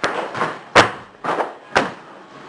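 A run of about five sharp thuds in two seconds, unevenly spaced, the one a little under a second in the loudest.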